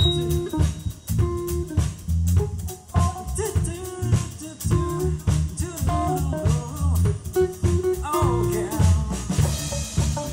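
Live funk band playing an instrumental passage: drum kit keeping a steady beat with bass drum and rimshots under electric bass, electric guitar and keyboard, with a melodic lead line over the top.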